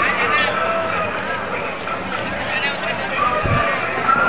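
Busy crowd: many people talking at once, with voices close by and overlapping. A short, low thump comes about three and a half seconds in.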